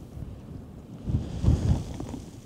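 Mountain wind buffeting the microphone, with a low rumble that swells in two gusts about a second in.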